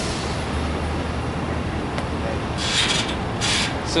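Steady city street traffic noise with a low engine hum, broken by two short hissing bursts about three seconds in.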